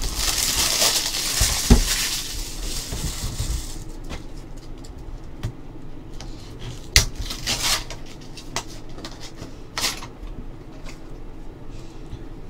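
Trading-card packaging being handled: a few seconds of crinkling rustle of wrapping, then scattered sharp clicks and taps of hard plastic card holders being picked up and set down.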